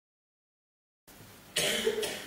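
Digital silence, then faint hall ambience from about a second in, and a single short cough about one and a half seconds in.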